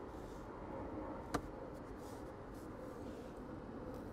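Quiet car-cabin room tone with a single faint plastic click about a second in as the sun visor is handled.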